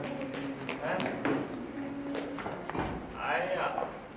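Low voices of several people talking quietly, with one voice rising briefly near the end. A few short taps and a dull thump sound, most likely shoes on the hard studio floor.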